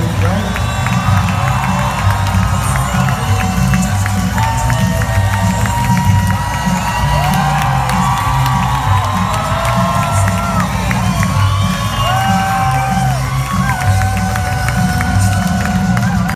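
Concert audience cheering, with many short held whoops and shouts over a continuous low rumble of music and crowd noise.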